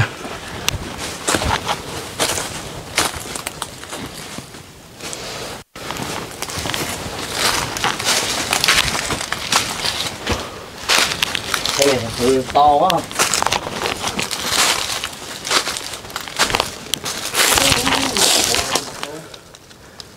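Footsteps crunching and rustling through a thick layer of dry fallen leaves and twigs, one irregular crackle after another.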